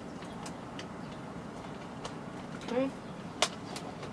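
Light handling clicks as a charging cable is unplugged from a phone and plugged into a mirror, over a steady background hiss, with two sharper clicks near the end.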